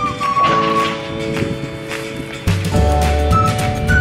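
Background music: a light melody over held chords, with a deep bass line coming in a little past halfway.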